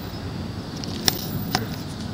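Two light clicks about half a second apart, a little after the middle, over a steady background hum.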